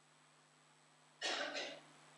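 A person coughing, a short double cough about a second in, over quiet room tone.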